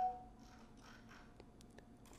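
Quiet room tone with a few faint clicks of a computer mouse about one and a half seconds in, with a brief tone fading away right at the start.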